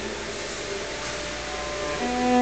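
A break between bowed cello notes: a note stops right at the start, then only a steady hiss of room noise remains.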